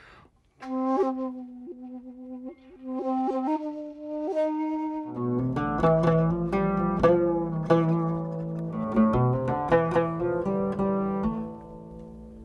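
Shakuhachi, a Japanese bamboo end-blown flute, playing slow held notes with small flicks and breath. About five seconds in, a plucked lute-type string instrument takes over with a quick run of notes.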